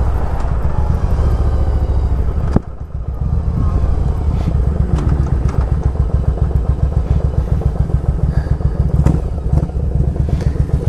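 1997 Yamaha Virago 1100's air-cooled V-twin running through Vance & Hines pipes, first steady under way. About two and a half seconds in there is a click and the sound drops suddenly. It then settles into a lumpy, evenly pulsing idle that keeps running without stalling.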